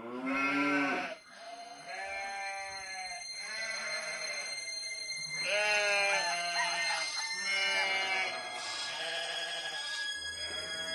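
A series of farm-animal bleats, about seven calls each around a second long, with wavering, bending pitch.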